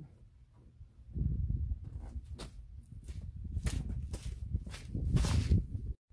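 Low thumping handling noise with several short fabric and strap rustles and scrapes, the loudest near the end, as nylon straps are worked in under a pickup's seat.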